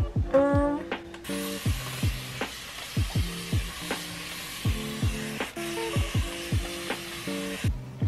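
A steady hissing spray from a white hair spray bottle misting a lifted section of curly hair, starting about a second in and cutting off shortly before the end. Background music with a steady beat plays underneath.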